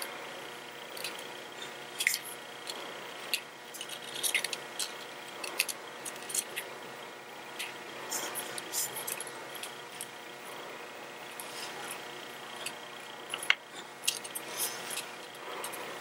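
Fingers wrapping braided fishing line around a fluorocarbon leader: faint, irregular small ticks and rustles of line and fingertips over a steady low hiss.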